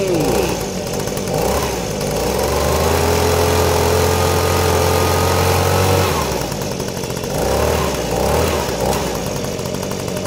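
Toy leaf blower playing its engine sound effect: a small engine note that rises as it starts, runs steadily for about four seconds and cuts off, then a shorter burst a second or so later.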